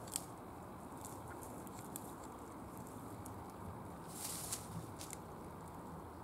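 Faint, steady outdoor background noise with a few light clicks scattered through it and a short rustle about four seconds in.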